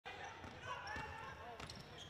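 A basketball being dribbled on a hardwood court: a few faint bounces, with faint voices in the arena.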